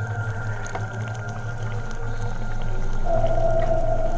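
Steady, low droning background music, with a held higher note coming in about three seconds in.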